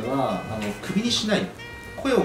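Speech in Portuguese over quiet background music.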